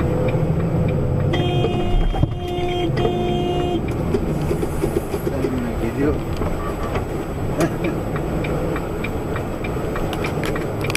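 Steady engine and road noise from a vehicle moving in traffic, with a car horn honking three times in quick succession from about one and a half to four seconds in.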